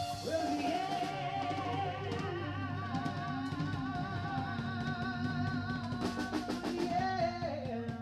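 Live band playing: electric guitars and a drum kit, with a lead melody wavering in pitch over the top.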